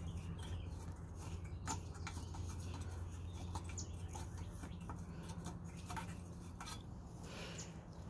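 Faint, scattered small clicks and scrapes of a bolt being turned in by hand against the mower's metal engine deck, over a steady low hum.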